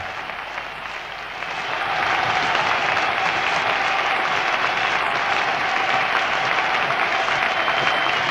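Concert audience applauding at the end of a live rock performance; the applause swells about two seconds in and then holds steady.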